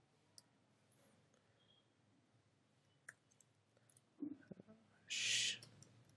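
Faint, sparse clicks of a computer keyboard as a line of code is typed, over quiet room tone. About five seconds in comes a brief, louder rush of noise.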